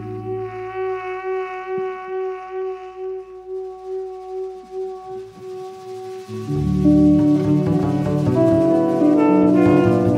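Jazz quartet of tenor saxophone, electric guitar, double bass and drums playing live: a long held note with a low drone fading beneath it, then about six and a half seconds in the whole band comes in louder with busy moving lines.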